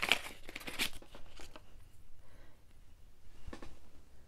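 Packaging being handled as a small pewter figure is taken out: a flurry of light crinkling and clicks in the first second and a half, then quieter rustling with a couple of soft taps.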